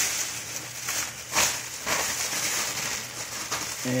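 Handling noise: rustling and scraping with a sharp click about a second and a half in, over a steady hiss.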